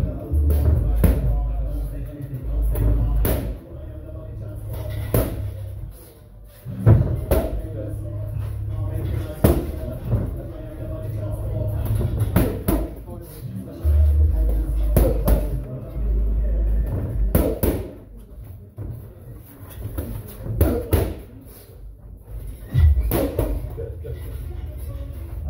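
Boxing gloves smacking against focus mitts in irregular single punches and quick pairs, over background music with a heavy bass line.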